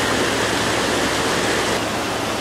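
Mountain river rushing over rocky rapids: a steady, even rush of water.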